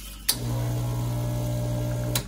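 Rancilio Silvia espresso machine's vibratory pump switched on with a click about a quarter second in, then humming steadily as it pumps water out into a small glass.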